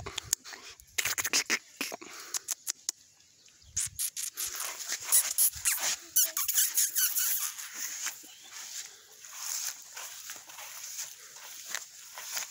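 Grass rustling and crackling with footsteps as a puppy moves through it, and a short puppy squeak about six seconds in.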